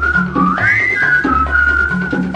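Upbeat dance song with a whistled melody over a bass line and a steady beat. The whistled line swoops up about half a second in and then settles back.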